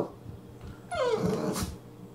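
Brittany puppy giving one short, rough growly bark, about half a second long and falling in pitch, about a second in.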